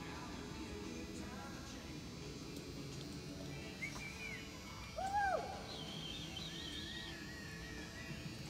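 Low steady hum of a large indoor arena, with a few short chirping calls from birds about four seconds in. The loudest is an arched call about five seconds in, followed by a warbling higher call and a wavering call near the end.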